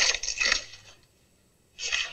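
Plastic bread bag crinkling as it is handled for about half a second, then a short quiet gap, then crinkling again at the very end.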